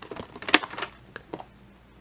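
Hard plastic clicks and knocks of a VHS cassette being lifted out of its plastic clamshell case, a handful of short clicks with the sharpest about half a second in.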